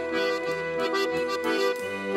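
Organetti, Italian diatonic button accordions, playing a purely instrumental passage of traditional Italian folk music with sustained reedy chords under the melody.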